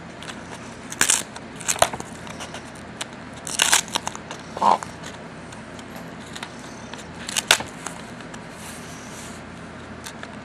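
Plastic packaging crinkling and crackling in short, irregular bursts as hands unwrap a plastic plant cup close to the microphone, with a brief squeak about halfway through.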